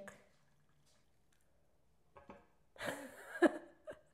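Quiet at first, then about three seconds in a short splash of tea being poured into a cup, with a sharp knock near its end.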